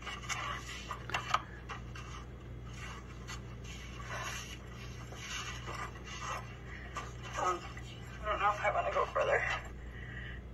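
Quiet rustling and scraping of a person squeezing through a narrow rock crevice, with short scuffs and clicks. Faint murmured speech comes near the end, over a steady low hum.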